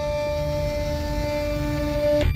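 Suspenseful film score: a low rumbling drone under steady held tones, with a lower held tone coming in about halfway.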